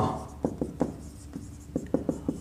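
Marker pen writing on a whiteboard: a run of short strokes and taps as letters are written.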